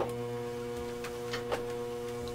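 Steady hum of a running treadmill's motor, with a few light clicks, two of them close together past the middle.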